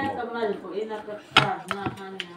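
A few sharp clinks of a spoon against ceramic bowls and plates at a meal table, the loudest about a second and a half in, over a low voice.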